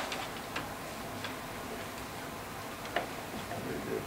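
A few light, irregular clicks over low room noise.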